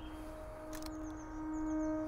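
A steady, even-pitched hum that grows louder toward the end, with faint short high-pitched notes in the middle.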